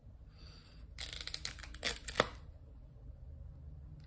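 Thin plastic clamshell wax-melt pack being pried open: a run of crackling plastic clicks about a second in, and a sharper snap a little after two seconds as the lid comes free.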